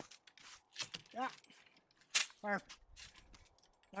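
Pruning cut into an apple tree's top, cutting back to a side shoot: a run of small clicks and rattles from the twigs and tool, with one sharp snap about two seconds in.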